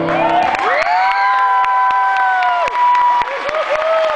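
Audience cheering and applauding, with one long high-pitched scream held for about two seconds starting half a second in, and shorter screams near the end.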